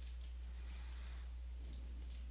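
A few faint computer mouse clicks over a steady low hum, the clicks placing line vertices while drawing a spline outline.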